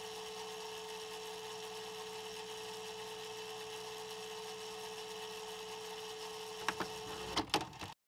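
Electronic glitch sound effect: a steady buzzing hum with one held tone, broken by a few sharp crackles near the end before it cuts off suddenly.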